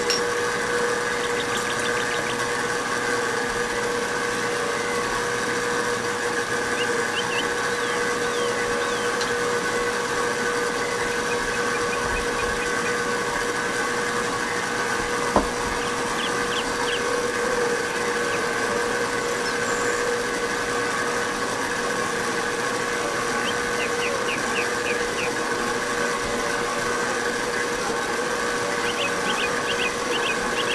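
Electric stand mixer running steadily at constant speed, its flat beater working stiff bread dough in a steel bowl, with a steady motor hum. A single sharp click about halfway through.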